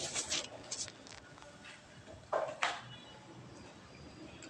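Soft eating sounds: short scattered clicks and mouth noises as a bite of pancake is taken and chewed, with two louder ones a little past halfway.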